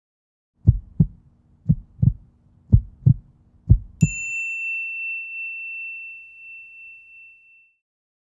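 Intro sound logo: four low, heartbeat-like double thumps about a second apart, then, on the last beat, a single bright chime that rings on and slowly fades away.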